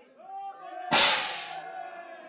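Confetti cannon going off with a sudden loud blast about a second in, its hiss trailing away over about half a second, with voices from the crowd around it.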